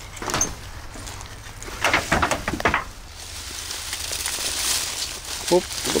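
Dry grass and dead leaves rustling and crunching as the ground cover is disturbed by hand and underfoot while searching for snakes. A cluster of sharp crackles comes about two seconds in, with softer rustling later.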